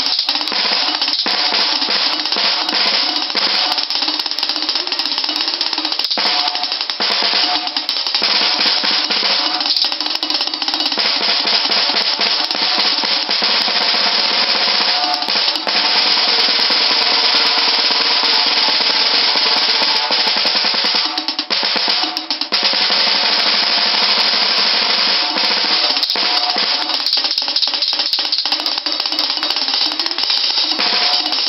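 Acoustic drum kit played without a break: fast rolls on the snare drum moving around the toms, a dense, even stream of strokes with only two brief let-ups near the three-quarter mark.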